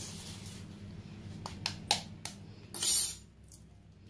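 An egg being tapped and its shell cracked open by hand over a plastic container: four quick sharp clicks past the middle, then a short crackle of breaking shell.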